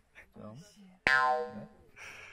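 A comic sound effect edited into the soundtrack: a single twangy boing about a second in, with a sharp start that rings out over half a second.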